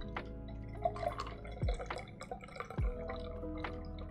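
A shaken egg-white cocktail trickling and dripping through a Hawthorne strainer and a fine mesh strainer into a tall collins glass, under soft lo-fi background music.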